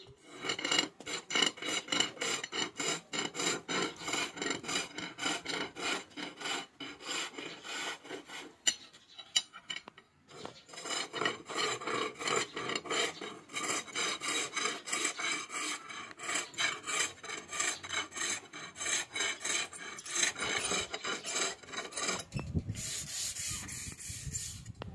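Chisel scraping a wooden handle spun back and forth on a bow lathe: a quick, even run of rasping cuts, one with each stroke of the bow, with a short pause a little before the middle.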